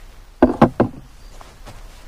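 Three quick knocks in a row about half a second in, like hard objects handled on a table.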